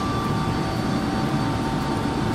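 Steady machine drone: a low rumble with a few steady whining tones held throughout, unchanging in level.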